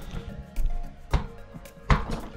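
Three short, dull knocks about half a second to three quarters of a second apart, the last and loudest near the end, from the camera being handled and shifted on the door slab. Quiet background music plays throughout.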